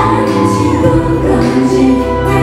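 A K-pop song performed live and amplified through a concert PA: female voices singing into handheld microphones over a band accompaniment with a steady bass line.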